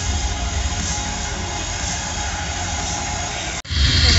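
Loud stage-show soundtrack through large venue speakers: a heavy, rumbling bass-laden effect with no clear beat, cutting off abruptly shortly before the end.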